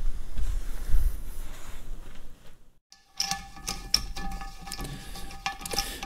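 Ratchet clicking in short runs as it turns a thread tap through a pre-combustion chamber bore in a cast-iron Caterpillar D2 cylinder head, chasing the threads. Faint steady tones run under the clicks. It is preceded by a low rumble and a brief dead gap.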